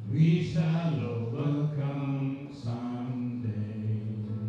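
A man singing a slow, chant-like melody in long held notes, over acoustic guitar accompaniment.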